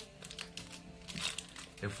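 Foil wrapper of a Pokémon TCG booster pack crinkling in the hands as it is being opened, a run of quiet irregular crackles.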